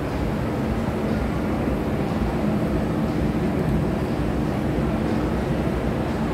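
Escalator running, a steady low mechanical rumble with an even hum.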